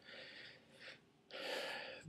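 A man's breathing in a pause between sentences: a faint breath at first, then a longer intake of breath through the mouth in the last second or so, just before he speaks again.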